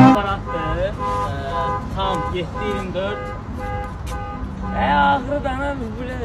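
A person's voice making short wordless sounds that slide up and down in pitch, over a steady low outdoor rumble.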